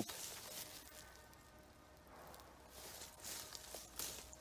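Quiet outdoor ambience, faint and steady, with a few soft clicks in the last second.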